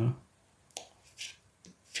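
A short pause in a man's speech holding a few faint, quick mouth clicks and a brief breath, the small sounds a speaker makes before his next sentence. The tail of one word is heard at the start, and the next word begins at the very end.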